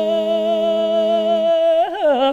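Two men's voices holding one long sung note together in a duet. The lower voice drops out about one and a half seconds in, and the upper voice wavers near the end.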